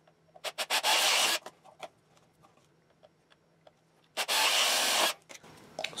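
Power drill with a half-inch bit boring holes through a PVC pipe wall: two rasping bursts of about a second each, one near the start and one about four seconds in.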